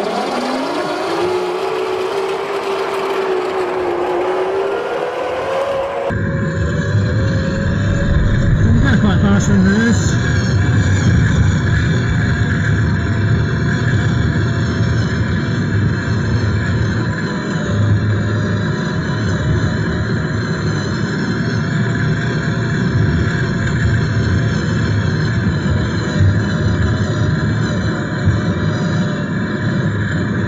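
Electric drive motor of a David Brown 880 tractor converted to battery power whining and rising in pitch as the tractor pulls away in reverse. After about six seconds the sound changes abruptly to a steady rumble and rattle of the tractor driving along, with the mower raised and the PTO off.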